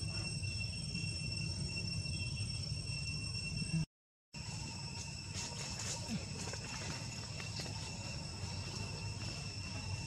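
Outdoor ambience: a steady, high insect drone over a low rumble, with faint scattered rustles and clicks. The sound cuts out completely for a moment about four seconds in.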